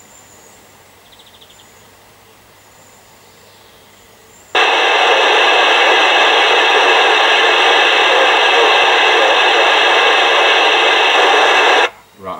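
FM CB radio's speaker giving a loud, steady hiss of static for about seven seconds, starting about four and a half seconds in and cutting off suddenly. It is a distant mobile station keying up at the edge of range: the carrier is there but too weak to read.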